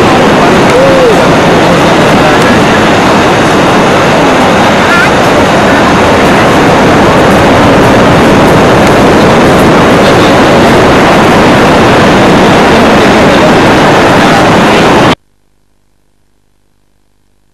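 Loud, steady rushing noise of wind buffeting the microphone over beach surf, overloading the recording, cutting off suddenly near the end.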